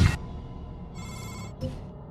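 Electronic ringing beep sound effect: a loud rush cuts off at the start, leaving a low hum. About a second in a short, high, ringing electronic tone sounds for half a second, followed by a brief blip.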